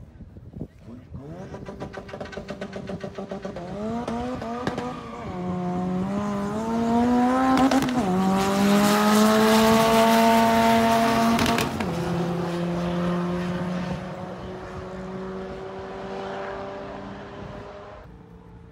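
Street-legal car launching down a quarter-mile drag strip at full throttle. The engine's pitch climbs and drops back at each of about three upshifts. It is loudest as it passes about eight to eleven seconds in, then fades away down the track.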